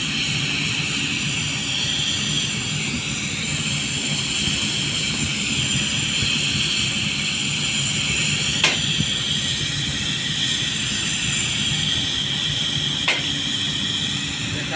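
Paint-spraying rig running steadily: a hiss from the spray gun over a low machine drone. Two short sharp clicks come, one about nine seconds in and one near the end.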